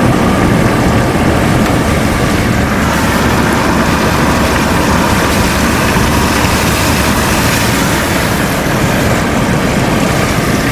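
Steady engine and road noise heard inside the cabin of a moving car.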